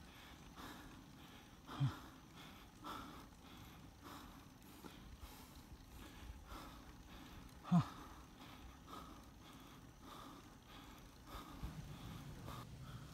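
A cyclist breathing hard while riding: several short, forceful exhalations spaced irregularly, the loudest two (about two seconds in and near eight seconds) with a brief voiced grunt, over a low steady hiss of wind and tyre noise.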